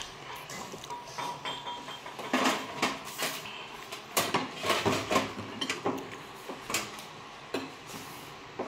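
Ceramic plates and bowls being set down and moved about on a table, with a string of scattered clinks and knocks, the busiest between about two and five seconds in.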